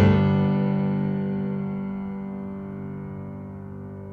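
A closing chord on a grand piano, struck right at the start and left to ring, its notes dying away slowly.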